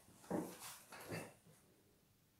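Three short, faint whining vocal sounds, each rising and falling in pitch.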